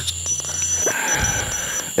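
Crickets chirping in short, uneven high-pitched pulses, over a low steady hum that stops about a second in.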